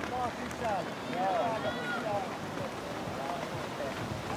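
Distant, indistinct raised voices calling out again and again, their pitch rising and falling.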